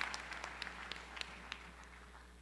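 Audience applause dying away, thinning to a few scattered claps.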